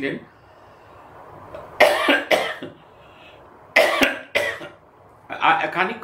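Someone coughing: two short pairs of sharp coughs about two seconds apart, in a pause between stretches of speech.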